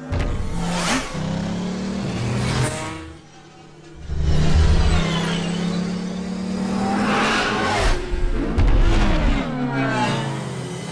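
Film sound effects of futuristic light cycles: a steady electronic engine hum with several whining pass-bys that sweep up and down in pitch. About three seconds in the sound drops away briefly, then surges back loud.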